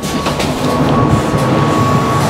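John Deere 6175R tractor's diesel engine idling steadily, heard through an open door, with a constant high whine over a low hum.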